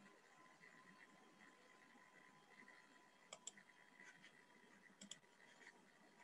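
Near silence: faint room tone with a steady faint tone, broken by a few faint clicks, two quick pairs about three and five seconds in.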